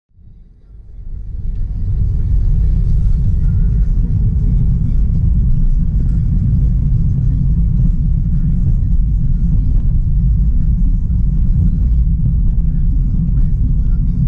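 Inside a moving car's cabin: a steady low rumble of road and engine noise that fades in over the first two seconds.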